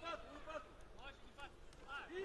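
Faint background voices: a few short, separate shouts or calls, with no loud strike or other event standing out.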